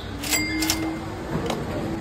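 Automated exit gate answering a scanned app QR code: two sharp clicks with a short electronic beep, then a steady low hum as it opens, and another click about a second and a half in.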